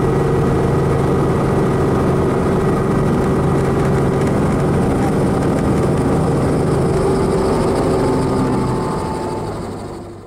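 Helicopter engine and rotor running steadily on the ground, a constant low drone with a few steady tones, fading out near the end.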